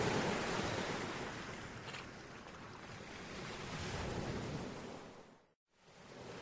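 Sea waves washing in and out, the surf swelling near the start and again about two-thirds of the way through. The sound cuts out for a moment near the end, then comes back.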